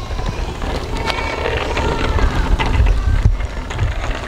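Wind buffeting the microphone over a hiss of tyres rolling on wet pavement, which swells in the middle.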